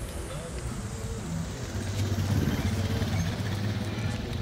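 Low rumble of wind buffeting a phone microphone carried on a moving bicycle, swelling about two seconds in, with faint background music underneath.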